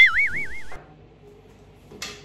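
A loud, high warbling tone whose pitch wobbles up and down about six times a second, like an edited-in cartoon sound effect; it cuts off suddenly under a second in, leaving quiet room tone.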